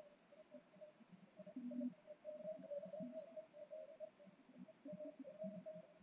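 Chalk writing on a blackboard: faint, irregular scratching and tapping as words are written.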